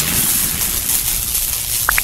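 Steady hissing noise from an animated intro's sound effect, with one short rising blip near the end as the subscribe button is clicked.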